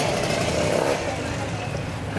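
Street-market background: a steady low engine-like rumble with people's voices talking.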